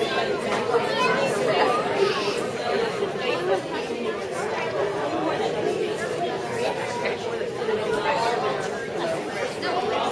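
Crowd chatter in a large hall: many children and adults talking at once, steady, with no single voice standing out.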